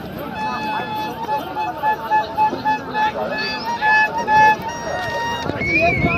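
A musical instrument plays one high note in a quick run of repeated pulses, over crowd voices and shouting.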